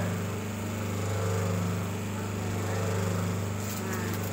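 Electric motor of a semi-automatic hydraulic double-die paper plate making machine running with a steady hum. A few light clicks come near the end.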